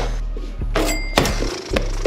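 Background music with a few sharp knocks from a mini basketball striking a small wall-mounted hoop. One knock about a second in rings briefly.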